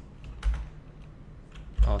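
Typing on a computer keyboard: a few separate keystrokes, the clearest about half a second in.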